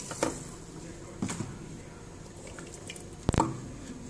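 Wooden spoon stirring a bean and tomato stew in an aluminium pot after a little water has been added: soft liquid squelching with a few short knocks, the sharpest just over three seconds in.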